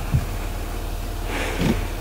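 Land Rover Discovery 3 engine idling, a steady low rumble, with a single short thump just after the start.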